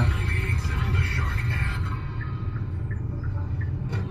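Low rumble inside a slowly moving car's cabin, with music from the car radio playing under it; it grows quieter about halfway through.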